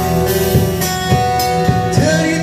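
Amplified acoustic guitar strummed in a steady rhythm, about three strokes a second, with no singing.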